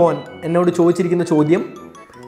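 A man speaking, over light background music.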